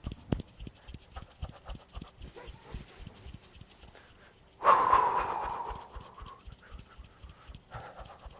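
Quick, irregular soft thumps of a person shaking his body loosely while standing on a wooden floor, with one long, loud breath out a little past halfway that fades away.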